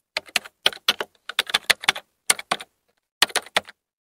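Keyboard typing clicks, a quick irregular run of keystrokes with a short pause a little past halfway: a typing sound effect laid over text being typed out on screen.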